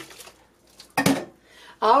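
Water running off a glass oil-lamp globe lifted out of soapy water. About a second in comes one sharp clink as the glass is set down against glass in the sink.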